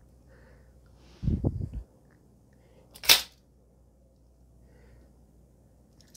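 Expandable baton flicked open: a low, muffled handling sound about a second in, then one sharp snap about three seconds in as the telescoping sections shoot out and lock.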